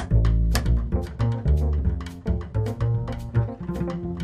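Jazz trio playing: plucked double bass to the fore with a run of changing low notes, over piano and regular cymbal strokes from a drum kit.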